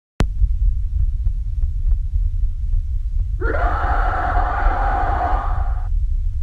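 Steady low rumble of a car cabin. About three and a half seconds in, a man gives a long, raspy growl lasting about two and a half seconds.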